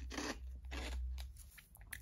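A person biting into and chewing Walkers-style French Fries potato crisps with a mouth-close crunching, the loudest crunch right at the start, then softer chewing.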